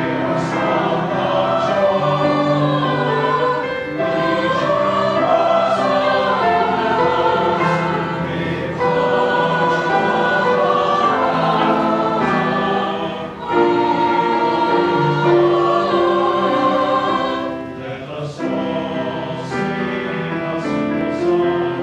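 A mixed choir singing in parts, holding long notes in chords, with short breaks between phrases about two-thirds of the way in and near the end.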